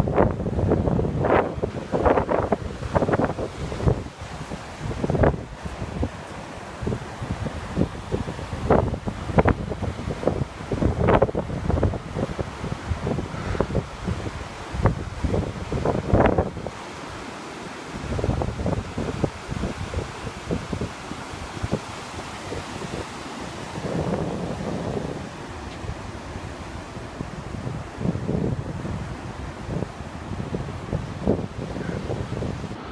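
Strong wind buffeting the microphone in irregular gusts, over the steady wash of low surf breaking on the shore.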